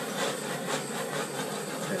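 Steady hiss of a small handheld torch passed over wet acrylic pour paint to pop the air bubbles in it.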